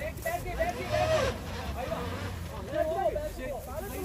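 Several people calling out over the low, steady running of a Suzuki Jimny's engine as it crawls over logs out of a dirt pit; the engine swells briefly about a second in.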